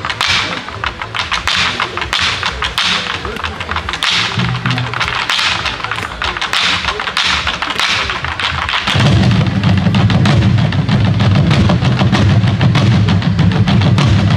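A children's janggu ensemble drumming: many Korean hourglass drums struck together with sticks in fast, driving rhythm. About nine seconds in, the drumming turns deeper and louder as heavy low strokes join.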